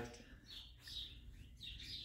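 Faint bird chirps, a few short high calls spread across the moment, over a low steady hum.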